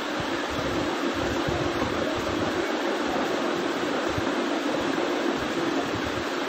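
Steady hiss with a faint low hum.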